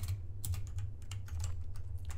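Typing on a computer keyboard: a run of irregular key clicks over a steady low hum.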